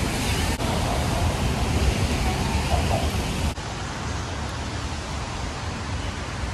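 Steady rushing noise of wind buffeting the phone's microphone in the rain, heaviest in a low, fluctuating rumble, with two brief dropouts about half a second and three and a half seconds in.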